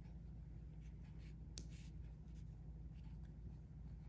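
Faint rustling and a few soft clicks of hands working a sewing needle and thread through crocheted cotton, with one sharper click about a second and a half in, over a low steady hum.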